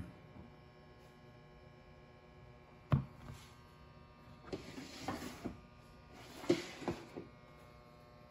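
A steady electrical hum, with a single sharp click about three seconds in and two brief bursts of rustling noise in the second half.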